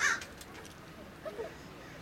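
One short, harsh bird call right at the start, followed by faint distant voices.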